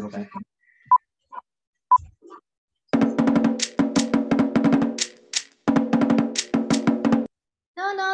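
Fast Tahitian 'ori drumming played back over a video call as a sound check, starting about three seconds in, breaking off briefly, then stopping shortly before the end.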